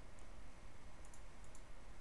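A few faint computer mouse clicks over low room noise.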